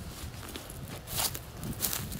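Footsteps through grass and low vegetation, with a couple of clearer steps in the second half.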